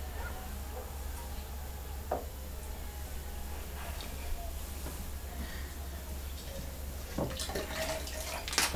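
Liquid raku glaze trickling and dripping from an upturned bisque bowl back into a plastic glaze bucket, faint, over a low steady hum. A few light knocks, one about two seconds in and several near the end.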